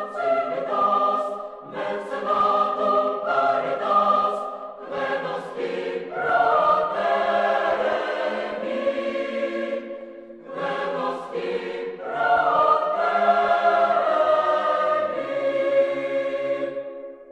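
A choir singing in held, sustained chords, in several phrases with short breaks between them.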